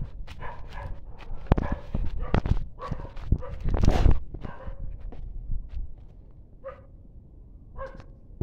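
A dog barking repeatedly, with the last couple of barks spaced further apart near the end. Between about one and a half and four seconds in, the loudest sounds are heavy thumps and rustling from someone moving fast through dry undergrowth.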